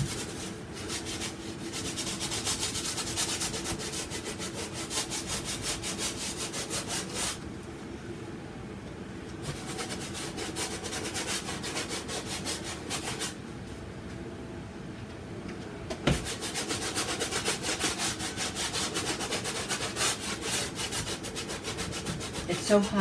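Stiff bristle brush scrubbing acrylic paint onto a canvas in quick back-and-forth strokes, in three spells with short pauses between. A single sharp click comes about two-thirds of the way through.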